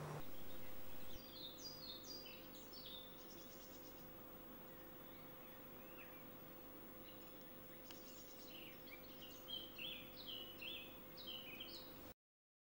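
A songbird singing in two bouts of short, quick high notes, heard faintly over a steady low hum.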